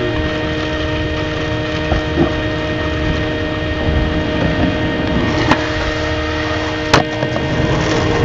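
Skateboard wheels rolling on rough asphalt, with a few sharp clacks of the board; the loudest comes about seven seconds in. A steady droning tone runs underneath.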